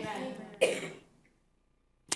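A man briefly clears his throat once, about half a second in, in a pause between spoken sentences.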